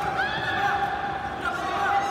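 High-pitched shouting voices: several short yells that rise and fall in pitch, over a steady faint tone.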